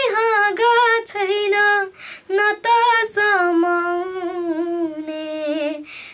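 A boy singing a Nepali song unaccompanied in a high voice, phrases bending between notes, then one long held note with a slight waver from about halfway through.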